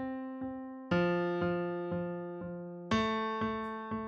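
Sampled grand piano chord struck about every two seconds, each strike followed by quarter-note repeats of the same chord about every half second, produced by MIDI note repeating. Each repeat is a little softer than the one before because the velocity ramp is set below 100%.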